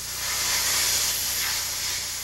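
Steady high hiss of a depth-gauge test pressure chamber being pressurized, the chamber's gauge passing about 85 feet on the way to a simulated 100 feet. The hiss swells about half a second in and eases slightly near the end.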